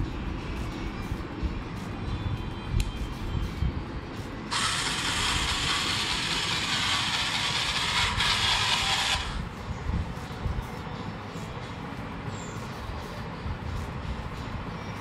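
The robot's two 12 V DC drive motors whirring as it drives on a hard floor, with scattered clicks and knocks. For about five seconds in the middle a much louder, hissing motor noise starts and stops abruptly.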